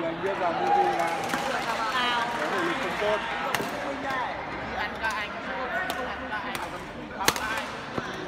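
A badminton racket strikes a shuttlecock with one sharp crack near the end, after a couple of fainter taps earlier, over the talk of voices in the hall.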